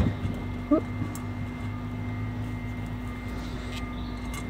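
Steady low mechanical drone of a distant engine in the background, with a few faint light clicks and a short rising tone about three-quarters of a second in.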